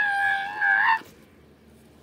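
A child's high-pitched cry, held on one pitch for about a second, with a slight upward bend at its end.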